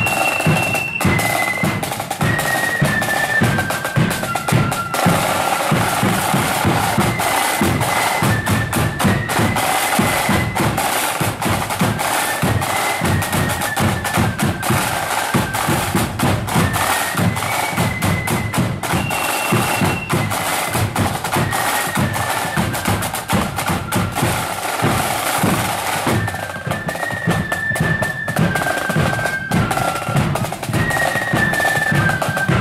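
Marching flute band playing a tune on the march: a high, single-line flute melody over a steady, driving beat of side drums and bass drum.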